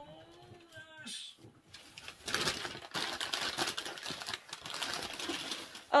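Paper being unwrapped, rustling and crinkling with many fine crackles, starting about two seconds in and running on. A drawn-out voiced 'oh' comes before it.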